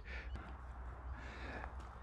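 Quiet outdoor background: a faint, even hiss over a steady low rumble, with no distinct event.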